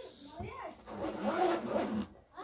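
A man's voice talking softly and indistinctly, louder in the second half, over the rustle of a black zippered fabric case being handled and set down on a cloth-covered table.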